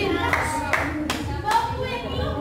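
Table tennis rally: the ball clicking sharply off the paddles and table, about four times at a steady pace, over the voices of watching spectators.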